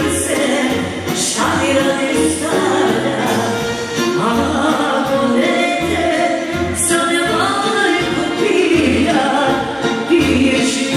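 Live amplified party music: a woman singing into a microphone over a band with a steady bass beat.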